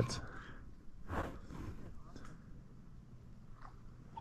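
Quiet outdoor ambience with a few faint, brief, indistinct sounds, the clearest about a second in.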